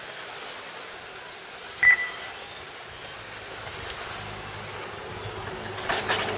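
Electric RC touring cars racing: the high-pitched whine of their motors rises and falls as they accelerate and brake through the corners. A short electronic beep sounds about two seconds in.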